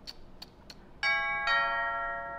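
Two-tone doorbell chime: a high 'ding' about a second in, then a lower 'dong' half a second later, both ringing on and slowly fading. A few faint ticks come before it.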